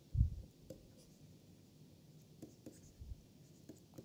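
Pen stylus tapping and scratching faintly on a tablet screen as words are handwritten, with a low thump just after the start.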